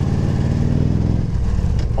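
Victory touring motorcycle's V-twin engine running at road speed under steady rushing wind and road noise, its pitch easing down slightly about half a second in.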